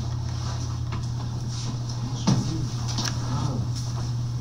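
Steady low hum of room background, with faint voices in the distance and a couple of light knocks.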